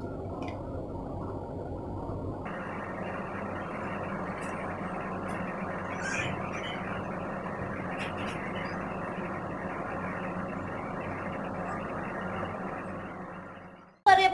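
Steady background hiss, which turns brighter about two and a half seconds in and fades out near the end.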